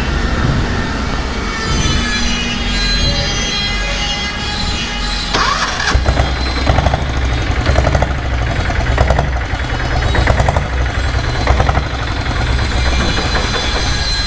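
Royal Enfield diesel Bullet's single-cylinder diesel engine idling with a steady low rumble, with fainter higher-pitched tones over it, one of them rising about five seconds in.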